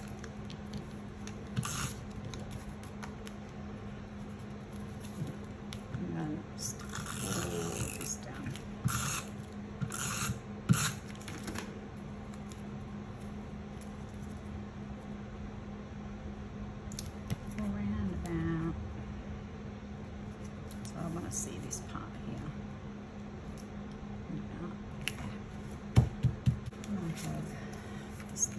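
Paper and card being handled and pressed down, with short scraping strokes of an adhesive tape runner drawn across card, clustered about 6 to 12 seconds in, over a steady low hum.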